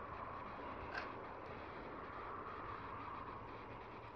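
Faint, steady outdoor background noise in still air, with one brief faint tick about a second in.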